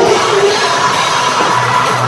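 Live hard rock band playing loud: distorted electric guitars, bass and drum kit, with a woman's lead vocal into a microphone, heard close to the stage through the PA.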